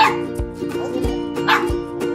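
Small dog giving two short barks, one at the start and another about a second and a half in, over background music.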